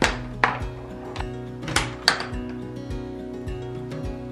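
Small wooden toy catapult being worked, giving several sharp, irregularly spaced wooden knocks as its arm is set and fired and the ball lands in the cardboard scoring box, over steady background music.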